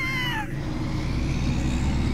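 A cartoon cat-like yowl, falling in pitch, fades out about half a second in, over a low steady rumble.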